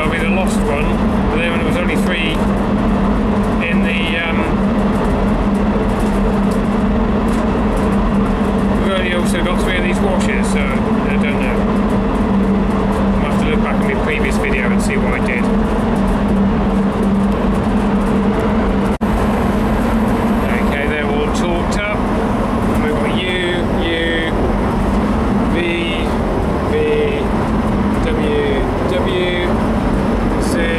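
Steady running machinery: a loud, unchanging drone with a constant low hum.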